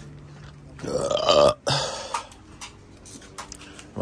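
A man's short, loud, throaty vocal sound, like a belch or grunt, about a second in, rising and then falling in pitch and lasting under a second. A steady low hum stops just after it, and a few faint clicks follow.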